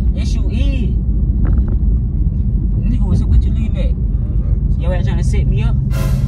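Steady low rumble of a car's engine and tyres on the road, heard from inside the cabin, with voices talking over it at times.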